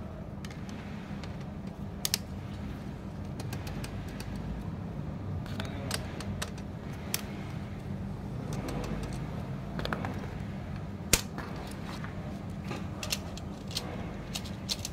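Scattered sharp clicks and taps of hard plastic and metal as a laser printer fuser assembly is handled and worked on with a screwdriver, over a steady low hum. The loudest is a single sharp click about eleven seconds in.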